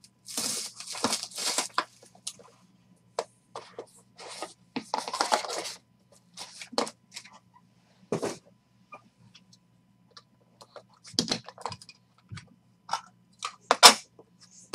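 Plastic wrap tearing and crinkling as a sealed trading-card box is opened, in two rough bursts over the first six seconds. Then a few sharp clicks and knocks of a hard plastic card case being handled, the last and loudest near the end.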